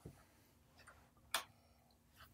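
Hands working the buttons and knobs of studio hardware, mainly a drum machine: a few soft, irregular clicks and one sharp click just past halfway.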